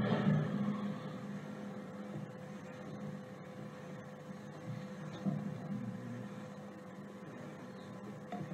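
Room tone of a courtroom audio recording: a steady electrical hum and low background rumble, with a brief louder noise at the very start that fades within about a second and faint muffled sounds around five seconds in.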